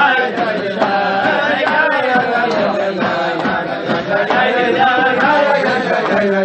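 A group of voices singing a Chassidic niggun together, with sharp beats about twice a second.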